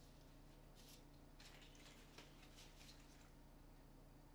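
Near silence over a low steady hum, with faint rustling of a chest bag's strap and buckle being handled and a soft click about two seconds in.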